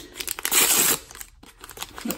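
A red printed LOL Surprise blind bag being crinkled and torn open by hand, with the loudest rip from about half a second to a second in, then quieter rustling.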